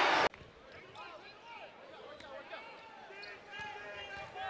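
A crowd cheer cuts off abruptly just after the start. Then quieter live basketball sound follows: sneakers squeak on the hardwood floor, a ball is dribbled, and the arena crowd murmurs faintly.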